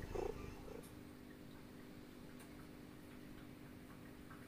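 A domestic cat purring softly, with a couple of short cat calls in the first second.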